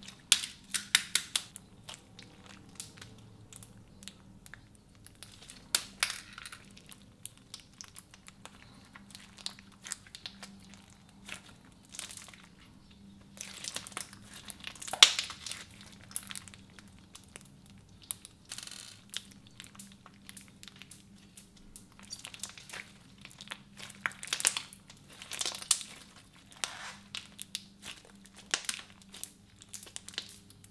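Clear slime packed with plastic pony beads squeezed and kneaded by hand, giving irregular crackling and clicking with a few louder pops.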